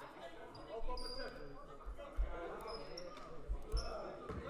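Quiet gym sounds during a stoppage in a basketball game: a few thuds of a basketball bouncing on the hardwood floor in the second half, short high sneaker squeaks, and faint voices carrying in the hall.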